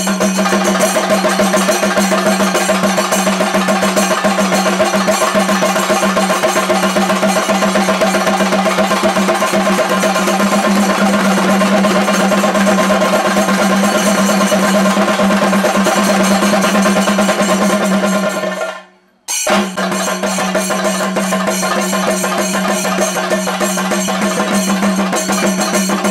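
Percussion music: fast, dense drumming over a steady held drone. It cuts out abruptly for about half a second roughly nineteen seconds in, then carries on as before.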